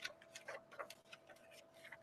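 Near silence with a few faint, irregular clicks from a hardback picture book being handled, a page starting to turn near the end.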